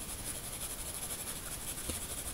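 Faint pencil graphite rubbing on drawing paper, over a steady background hiss.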